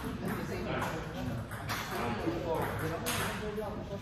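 People talking in a large hall, with a few sharp clicks of table tennis balls striking bats and tables.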